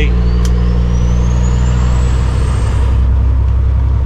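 Kenworth W900L semi truck's Cummins ISX diesel engine running steadily at highway cruise, heard as a constant low drone inside the cab. A faint high whistle rises in pitch over the first few seconds.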